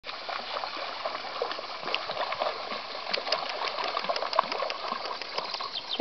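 Shallow river water rushing steadily, with many small irregular splashes from pugs wading through it.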